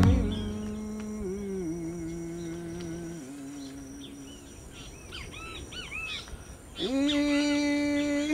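A low wordless voice humming long held notes that step down in pitch, fading as a few short bird chirps come through. Near the end a louder hummed note swoops up and is held.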